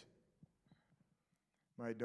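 A pause in a man's speech: near silence with a few faint soft ticks, then his voice comes back near the end.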